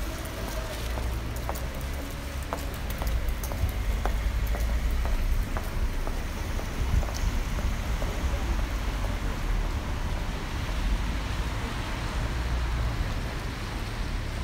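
Wet city street ambience: a steady hiss of rain and traffic on wet pavement over a low, uneven rumble, with scattered small ticks in the first few seconds.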